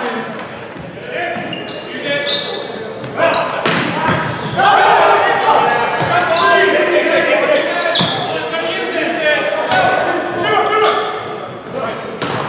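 Volleyball rally sounds echoing in a large gymnasium: players shouting and calling, sharp smacks of the ball being served and hit several times, and sneakers squeaking on the hardwood court.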